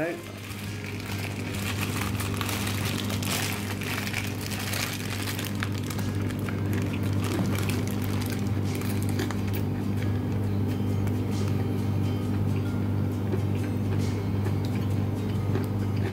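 Background music with steady, sustained low tones, starting and stopping abruptly.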